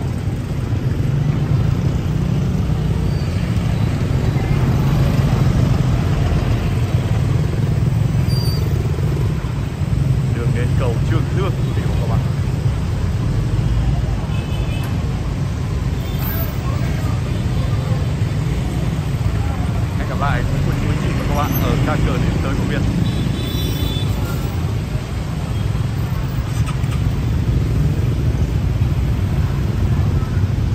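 Dense city street traffic: a steady rumble of motorbikes, cars and a bus passing close by, with passers-by talking now and then.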